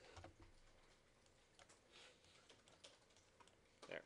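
Faint, scattered clicks and taps of a computer keyboard and mouse.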